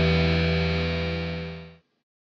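Trailer music: a held chord sustaining and fading, then cut off abruptly near the end.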